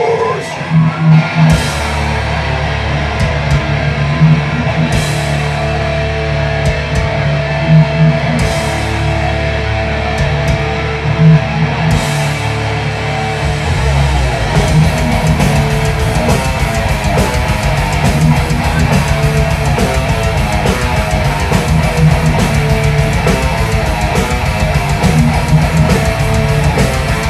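Live death metal band playing: down-tuned distorted electric guitars on a heavy riff with crash cymbal hits every few seconds, then fast drumming comes in about halfway through.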